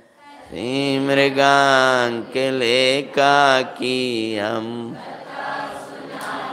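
A man's voice chanting a verse unaccompanied, in long held notes broken into short phrases, dying away about five seconds in.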